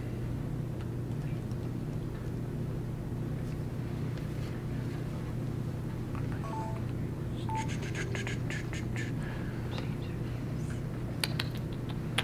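Room tone: a steady low hum, with a quick run of faint clicks and rustles about eight seconds in and two sharp clicks near the end.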